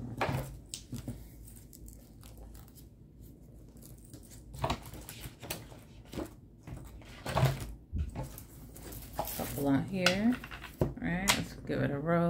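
Paper pages of a disc-bound notebook being handled and turned, with scattered rustles and light clicks and knocks on a tabletop. A few brief spoken words come near the end.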